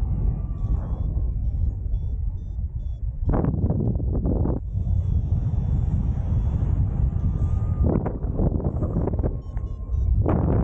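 Airflow buffeting the camera microphone in paraglider flight: a steady low rumble, with stronger gusts of wind noise about three seconds in and again near the end. Faint short high beeps sound now and then.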